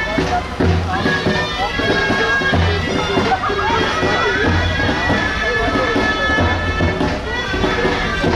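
Loud folk music led by a reedy wind instrument playing a melody over steady held tones, with a low drum-like beat about every two seconds.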